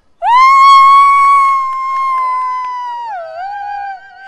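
A woman's voice holds one long, very high note for about three seconds, then steps down to a lower note near the end, in a sung, fanfare-like squeal.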